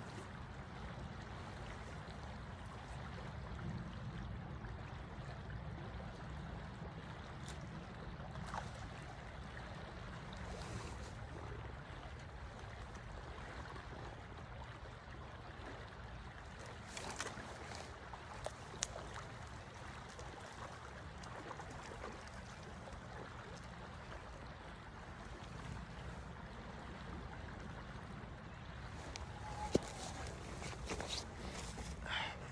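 Steady rush of a shallow, riffled stream flowing over stones, with a few faint clicks about two-thirds of the way in and a sharp knock near the end.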